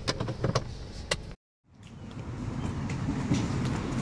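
A few sharp clicks and knocks inside a parked car. After a brief dropout comes a steady rushing noise that grows louder.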